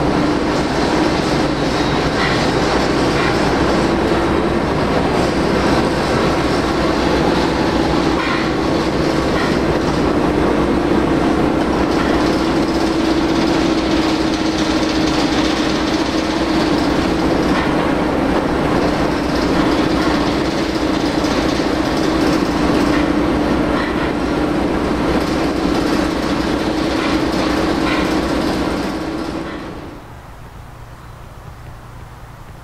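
Diesel locomotive engine running steadily at idle, with a constant low hum. It fades out near the end.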